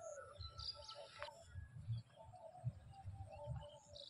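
Faint bird calls: short, scattered chirps over a low, irregular rumble.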